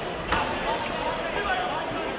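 Chatter of many overlapping voices in a sports hall, with one dull thump about a third of a second in.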